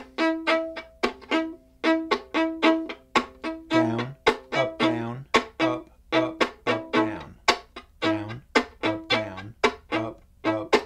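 Violin played in strum-bowing style: a steady groove of short bow strokes across the strings, pitched chord strokes mixed with percussive chops, about three strokes a second. A few lower notes come in around the middle.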